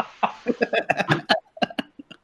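A man laughing hard in quick, uneven pulses that die away near the end.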